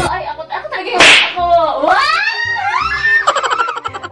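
A sharp smack about a second in, followed by high, swooping shrieks and laughter from a group of women.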